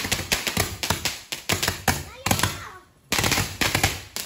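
A string of firecrackers going off: rapid, irregular bangs that break off briefly near the three-second mark, then resume.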